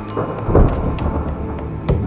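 A deep rumbling boom like thunder about half a second in, then a sharp hit just before the end, over music.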